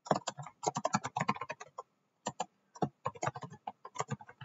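Typing on a computer keyboard: quick runs of keystrokes, a brief pause about halfway through, then more keystrokes.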